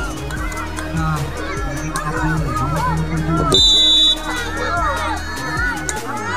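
A crowd of spectators chattering and shouting over a steady low hum. A referee's whistle gives one short, shrill blast a little past halfway through, the signal that the penalty kick may be taken.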